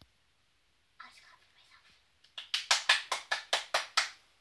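A young girl laughing in a quick run of about ten breathy bursts, after a soft whisper-like breath about a second in.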